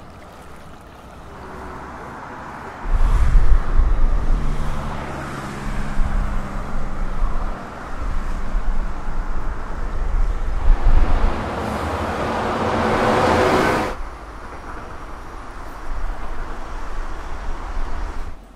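Outdoor traffic: a motor engine running with a steady low hum, then a vehicle's rush of noise building up and cutting off suddenly, leaving quieter street background.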